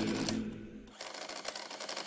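Canon MP121-MG printing calculator being keyed, its print mechanism chattering in a fast run of clicks as it prints onto the paper tape. Background music fades out in the first second.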